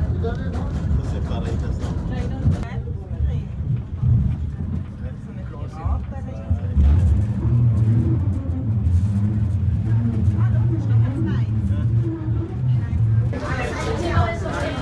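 Funicular car running along its rail track: a steady low rumble that grows heavier about seven seconds in, as the car passes the other car on the track.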